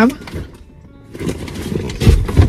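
Rustling and handling noise from a bag and belongings being moved about inside a car, starting about a second in, with a few small knocks.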